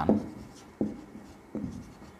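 Marker pen writing on a whiteboard: a few short, separate strokes about three-quarters of a second apart.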